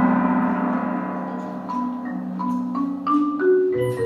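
Mallet percussion ensemble of marimbas and other keyboard percussion: a struck chord rings on and slowly fades, then single bell-like mallet notes enter one by one, stepping upward in pitch, with lower bar notes joining near the end.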